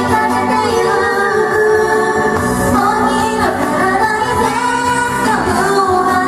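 Two women singing a song together into handheld microphones over a backing track, at a steady level.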